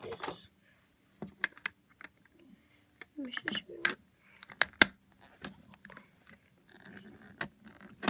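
Snap Circuits parts being handled and pressed onto the clear plastic base grid: a scattered run of sharp clicks and light plastic rattles.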